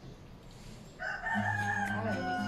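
A rooster crowing: one long crow that starts about a second in and is still going at the end.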